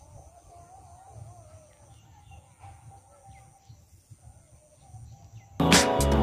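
Quiet outdoor background with faint bird calls, then about five and a half seconds in a loud song with singing cuts in abruptly.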